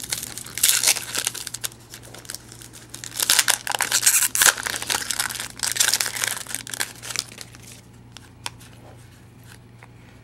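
Foil wrapper of a 2009-10 Panini Prestige basketball card pack crinkling and tearing as it is opened by hand, in irregular bursts for about seven seconds before dying down.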